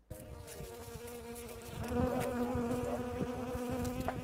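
A bee buzzing in close-up at the flower, a steady drone that rises slightly in pitch and gets louder about halfway through.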